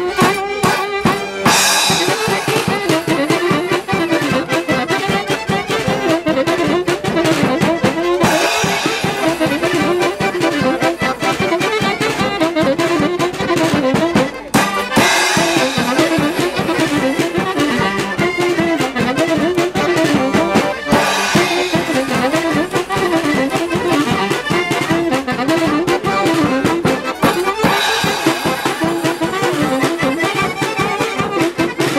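Polish folk band playing a tune on accordion, fiddle and saxophone, with a snare drum and cymbal keeping a steady beat. Brighter cymbal-heavy stretches come round every six seconds or so.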